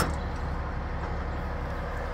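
Semi truck's diesel engine idling steadily, with a single sharp click right at the start.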